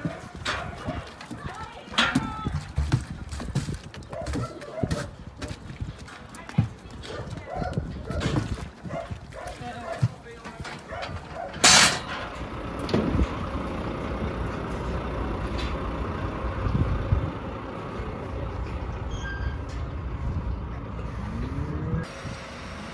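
Metal pen gates clanking and knocking as cattle are handled, then a short, loud hiss of a lorry's air brake about twelve seconds in. After it a steady low rumble of the livestock lorry's diesel engine as it manoeuvres.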